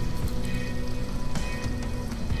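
Background music with sustained tones plays over a steady hiss of noise.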